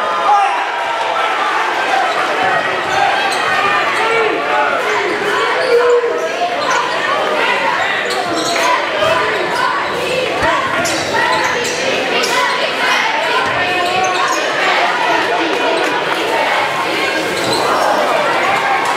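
Basketball dribbled on a hardwood gym floor, repeated thumps, over a steady din of many spectators' voices echoing in a large gymnasium.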